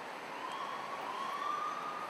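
Faint emergency-vehicle siren, one slow wail rising in pitch, over steady outdoor traffic background noise.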